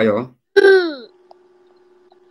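Speech over a video call: a man's spoken question ends, then a short, high voice falls in pitch. A faint steady hum lies under the pause that follows.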